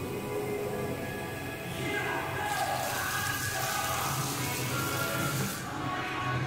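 Background music, with water from a tap running into a sink from about halfway through until just before the end.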